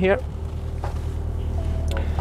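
Engine of a manual car heard from inside the cabin, a low steady hum as the car starts to creep backward in reverse gear.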